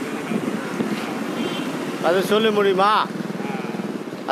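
Street traffic: a motor vehicle engine running close by, a steady low rumble, with a man's voice speaking briefly in the middle.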